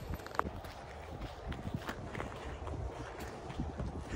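Footsteps on a wet, slushy sidewalk of melting snow, an irregular run of soft steps, with wind rumbling on the microphone.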